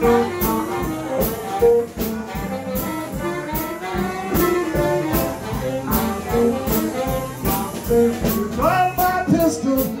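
Live blues band playing an instrumental passage: a steady drum-kit beat with electric guitar, saxophone and a harmonica played into a vocal microphone.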